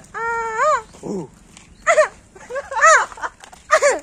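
An animal calling several times in high-pitched, drawn-out cries: two of about half a second each in the first second, then three shorter calls that rise and fall.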